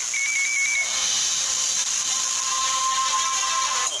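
A short electronic jingle between radio spots. A quick warbling beep comes first, then one steady tone is held for about two seconds, cutting off just before the next announcement. A constant high hiss runs underneath.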